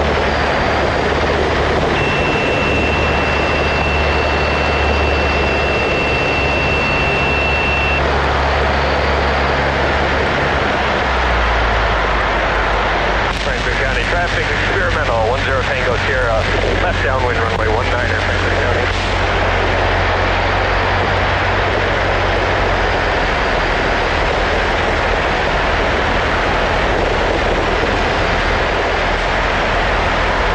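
Cessna 152's four-cylinder Lycoming engine and propeller droning steadily in flight, heard in the cockpit. The engine note changes about eleven seconds in.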